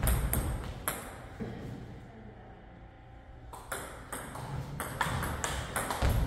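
Table tennis ball clicking off paddles and the table: a few sharp clicks at the start, a quiet gap in the middle, then a rally that picks up in the second half with clicks coming about every half second.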